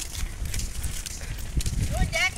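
Wind rumbling on a phone's microphone, with faint voices in the background.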